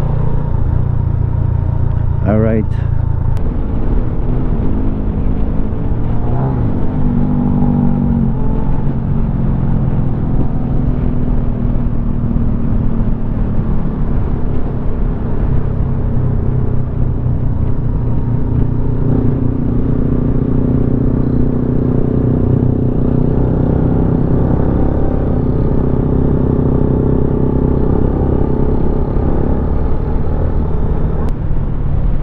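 Benelli VLX 150's single-cylinder engine running under way, its pitch rising and falling as the rider throttles and changes speed. A short rising sound breaks through about two seconds in.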